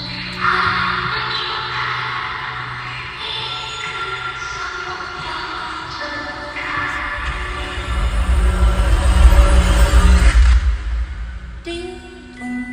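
Live concert music, an instrumental passage of held chords. A deep bass swell builds from about seven seconds in, is loudest around ten seconds, and then cuts off shortly before the end.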